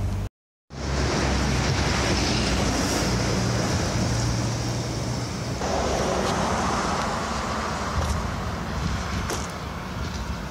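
Steady rushing noise of wind and motion on the microphone of a moving camera, with a low rumble like passing road traffic. The sound drops out for a moment just after the start.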